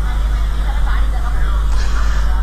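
Open audio from an outdoor live news feed: a steady low rumble with faint background voices, and the reporter is not speaking. The live link is having technical problems.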